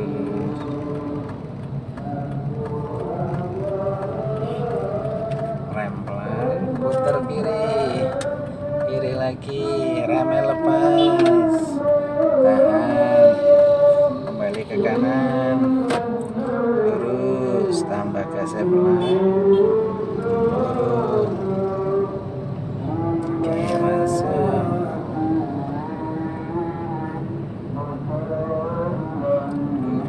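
A voice singing in long, drawn-out melodic phrases with held, wavering notes, the longest held note about halfway through, over a steady low rumble of car cabin noise.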